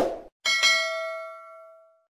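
Subscribe-button sound effect: a quick mouse click at the start, then about half a second in a bright notification-bell chime that rings and fades away over about a second and a half.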